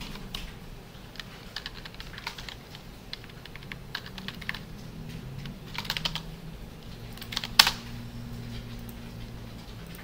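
Typing on a computer keyboard: irregular keystrokes, some in quick runs, with one sharper, louder click about three-quarters of the way through.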